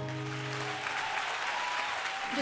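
Audience applauding as the band's last chord rings out and fades within the first second.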